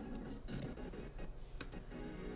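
Faint, low-level playback audio from a video editing timeline, with a few scattered light clicks or clatters, the clearest about one and a half seconds in.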